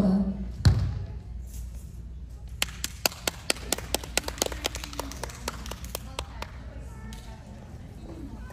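A heavy thump just under a second in, then a few people clapping, sharp separate claps for about four seconds, over low voices in a large hall.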